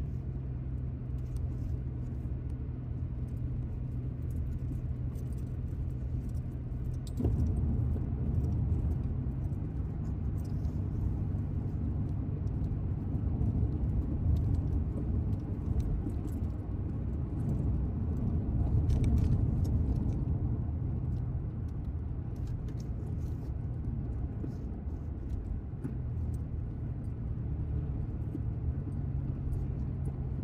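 Steady road noise inside a moving car's cabin: tyre and engine rumble at highway speed. The rumble gets louder about seven seconds in and swells again later.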